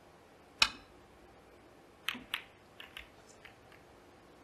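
Snooker shot: a sharp click of the cue striking the cue ball about half a second in, then two clicks of balls colliding near the middle and a few fainter clicks as the balls knock together.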